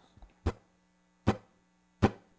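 Two sharp percussive taps about 0.8 s apart, the start of the guitarist's evenly spaced count-in for an acoustic guitar song, over a faint steady hum.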